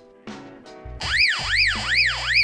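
Baofeng UV-5R handheld radio's built-in alarm going off through its speaker, set off by holding the call button: a siren tone that sweeps up and down about two and a half times a second, starting about a second in.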